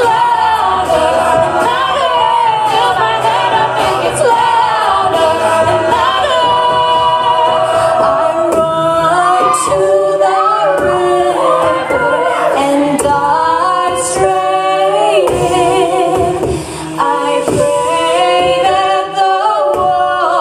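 Live a cappella group singing: a female lead voice over sustained group harmonies, with vocal percussion keeping the beat.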